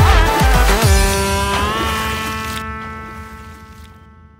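Background music coming to its end: a few deep bass beats, then a held final chord that fades out.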